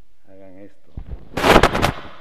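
A short spoken sound, then a loud burst of crackling pops on an open microphone, about half a second of rapid sharp cracks: noise that a voice just afterwards calls "ruido".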